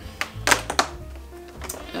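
Fingers picking and pulling at a cardboard advent calendar door, giving a few short taps and scratches in the first second and one more near the end, over soft background music.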